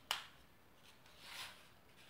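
A small ruler set against a painted wall with one sharp click, followed about a second later by a faint rubbing hiss as it is handled against the wall.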